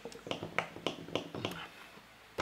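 A quick, irregular run of light clicks, about three or four a second, fading out near the end.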